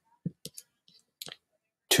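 A few short clicks from a computer mouse, spread over about a second, with quiet in between.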